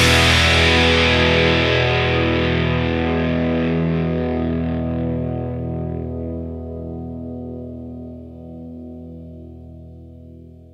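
Closing chord of a Japanese rock song left ringing on distorted electric guitar after the band stops, slowly fading away.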